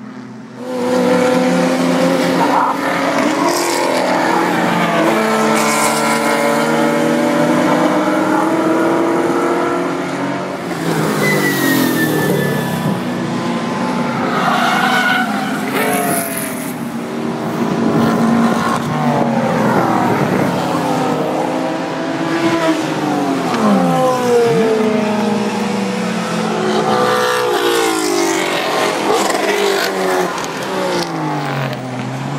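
Several road-racing cars' engines at high revs, passing at speed, their notes overlapping and repeatedly climbing through the gears and dropping back as they shift and brake.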